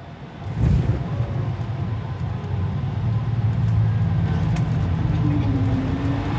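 Airliner cabin noise: a steady low drone of engines and air that fades in about half a second in and holds, heard from inside the cabin of a plane that has just landed.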